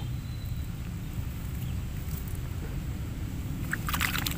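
Steady low outdoor rumble, with a few faint clicks near the end.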